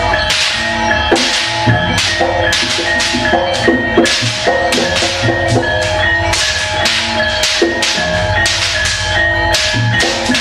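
Jaranan gamelan ensemble playing a steady, driving rhythm: drums and low gong strokes under ringing tuned metal instruments, with sharp cracks about twice a second.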